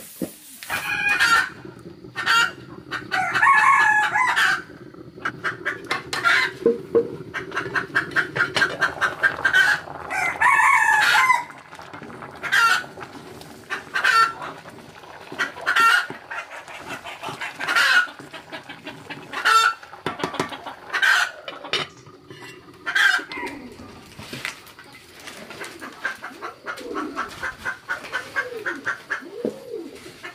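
Domestic chickens clucking in a run of short calls about once a second. A rooster crows twice, early and about ten seconds in.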